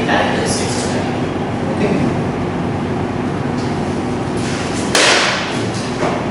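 A man's voice over a steady, rumbling room noise, with a short loud rush of noise about five seconds in.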